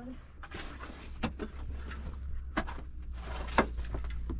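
A few sharp knocks, about three, the loudest near the end, over a steady low rumble.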